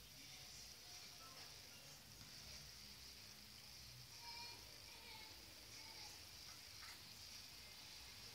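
Near silence: faint room tone with a steady high-pitched hiss.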